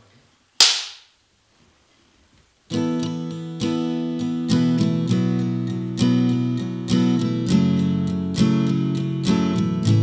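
A short, sharp hiss less than a second in, then near silence until nearly three seconds in, when an acoustic guitar starts a slow instrumental intro: picked chords about one every second, each left ringing.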